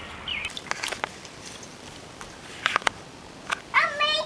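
A few scattered sharp clicks and knocks, with a short high-pitched voice-like sound starting just before the end.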